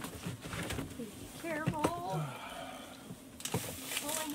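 A man climbing up onto a countertop: scattered knocks and shuffles, with a short wavering vocal sound about one and a half seconds in.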